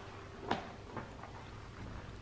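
Quiet room tone with a low hum and a couple of faint short knocks, about half a second and a second in.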